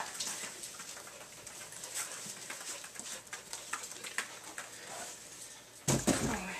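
A dog panting and moving about, with scattered small clicks and one sharp knock just before the end.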